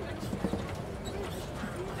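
Open-sided safari truck driving along a rough track: a steady low engine and road rumble with scattered knocks and rattles from the vehicle, one sharper knock about half a second in.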